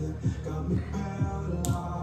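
Background pop music with a steady, driving beat.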